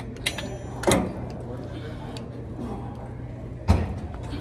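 Gym cable machine clanking as its bar and carabiner are handled and pulled: a sharp knock about a second in and a heavy thud near the end, over a steady low hum.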